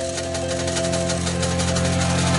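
Instrumental intro of a pop-rock song: held notes over a fast, even pulsing rhythm, steadily growing louder.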